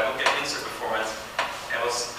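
A man speaking, with two sharp clicks, the first about a quarter second in and the second a little past the middle.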